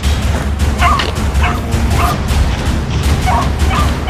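Hunting dogs giving short, yelping bays, about five in four seconds, as they run a rabbit, over a steady low rumble on the microphone.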